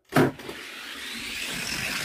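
Die-cast toy cars released down a gravity drag-race track: a sharp clack as they are let go, then the rolling whir and rumble of their wheels on the track, growing steadily louder as they run down toward the finish.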